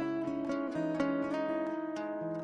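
Acoustic guitar playing a slow melody of single plucked notes that ring on.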